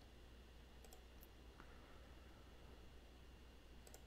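Near silence: a faint steady low hum, with a few faint short clicks about a second in and again near the end.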